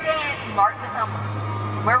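Young girls' voices talking in a group huddle, over a steady low hum.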